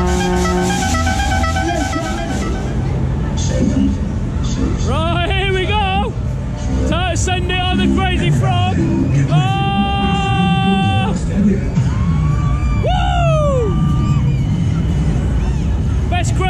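Twist-style spinning fairground ride in motion, heard from a seat on it: loud ride music and an amplified voice over the ride's speakers, with a heavy rumble of wind and ride motion on the camera. A held multi-note tone cuts off about a second in.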